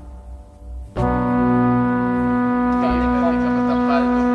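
Background music: a sustained brass-like chord enters abruptly about a second in and holds steady and loud.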